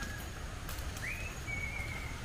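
A bird's clear whistled notes: one note fades just after the start, then a note sweeps up about a second in and is followed by a held higher note. Underneath is a faint low rumble.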